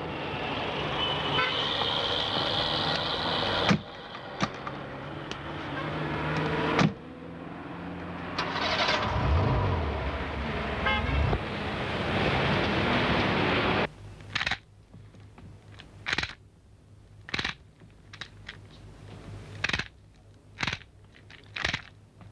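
City street traffic: cars running and car horns tooting, with abrupt cuts in the sound. For the last several seconds it drops much quieter, with a scattering of sharp clicks.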